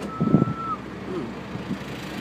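A single steady high-pitched tone held for under a second, over men's voices and outdoor background noise.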